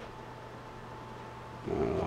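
Quiet room tone with a faint steady hum; a man's voice starts near the end.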